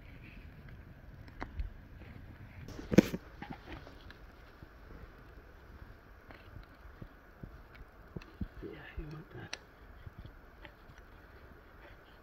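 Green wooden sticks and a log being handled and set in place: scattered wooden knocks and rubs, the loudest a sharp knock about three seconds in.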